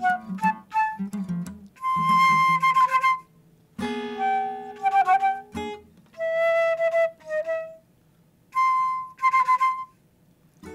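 Flute playing short phrases separated by pauses, over acoustic guitar notes and a held chord in the first half. It is open, improvised-sounding chamber playing.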